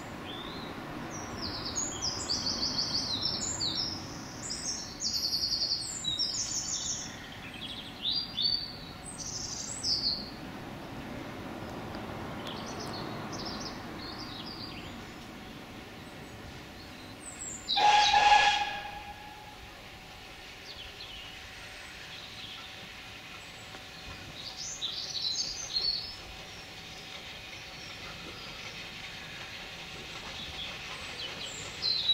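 BR Standard Class 2MT steam locomotive 78018 approaching with a low rumble while birds sing, and sounding one short whistle a little past halfway, the loudest sound in the stretch.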